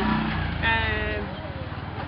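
A motor vehicle's engine running with a steady low rumble, and a short drawn-out voice in the middle.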